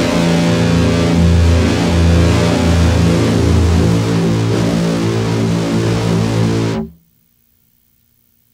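Loud instrumental music with guitar and sustained low bass notes, ending abruptly about seven seconds in, then silence.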